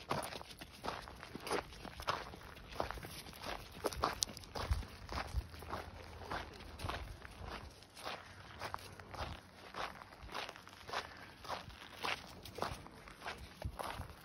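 Footsteps on a packed dirt and gravel road, at a steady walking pace of about two steps a second.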